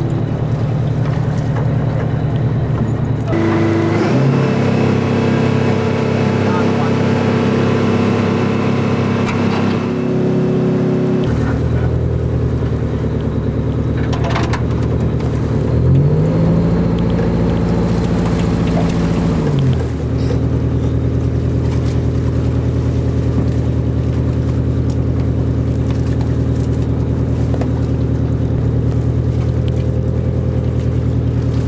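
A tugboat's diesel engine running steadily, its note shifting several times. About sixteen seconds in, a tone rises, holds for a few seconds and drops back.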